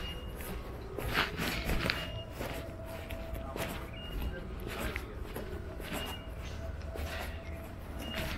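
Footsteps of a person walking at a steady pace on a paved sidewalk, over a steady low rumble of wind and distant traffic. A short high tone sounds about every two seconds.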